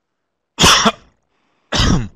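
A man coughing twice, two loud coughs about a second apart, the first a quick double, from a tickle in his throat: "a little frog in my throat".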